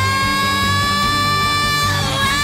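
A female R&B singer holding one long, high sustained note over band accompaniment. The pitch creeps slightly upward as she holds it.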